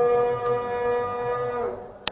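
A single voice holding one long chanted note, which slides down in pitch and fades out near the end.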